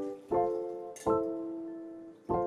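Background music: soft piano chords, a new chord struck twice and each left to ring and fade. A brief tick comes about a second in.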